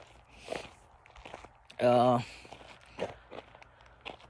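Footsteps of a person walking: a handful of soft, irregular steps, with a short spoken 'uh' about halfway through.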